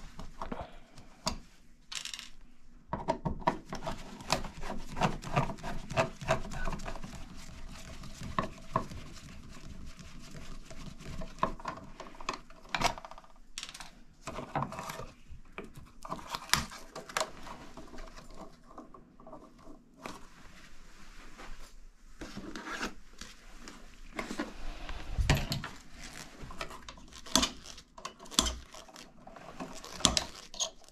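Hand tools working on a bathroom wall outlet: a screwdriver backing out screws, with plastic and metal clicks, taps and scraping as a heat-damaged duplex receptacle is worked loose and pulled from its box. A quick run of close clicks comes a few seconds in, and a dull thump comes near the end.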